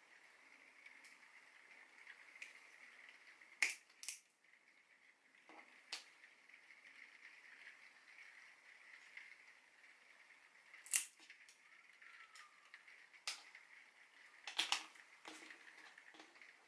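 Pliers cracking and snapping pieces off the hard shell of a plum pit: a scattering of short sharp cracks, a pair about four seconds in, the loudest about eleven seconds in, and a quick cluster near the end.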